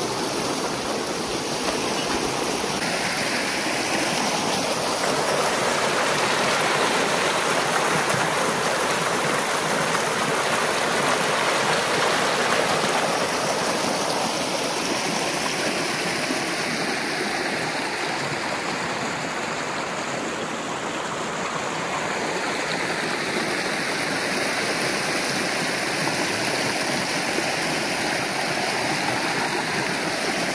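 Water gushing steadily through a breach raked open in a peat beaver dam as the pond behind it drains.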